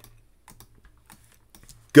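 A few faint, scattered clicks of a computer keyboard and mouse, made while zooming in on an image.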